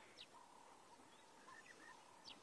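Near silence in the bush, with a few faint, short bird chirps scattered through it.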